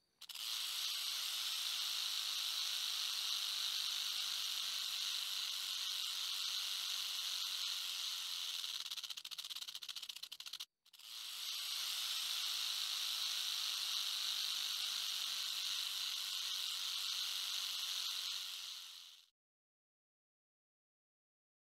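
Loud, steady hissing noise in two long stretches, broken by a brief dropout about ten and a half seconds in; it flutters rapidly for a second or two just before the break.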